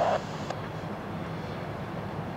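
NZR Ja class steam locomotive running slowly, heard as a steady low rumble, with a faint click about half a second in.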